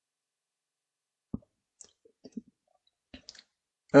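Near silence broken by a few faint, isolated clicks, about a second in and again near three seconds, with a couple of tiny soft blips between them.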